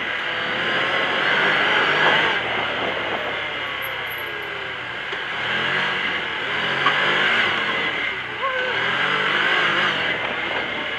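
Can-Am Commander 800 side-by-side's Rotax V-twin engine driving along a dirt trail. The engine pitch climbs and drops back several times as the throttle is worked, over a constant rushing noise.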